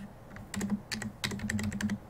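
Computer keyboard being typed on: a quick run of keystrokes, starting about half a second in, as a password is entered.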